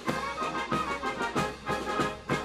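Military brass band playing, with sustained brass notes and regular attacks.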